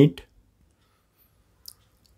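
The tail of a spoken word, then near silence broken by one short, faint click near the end.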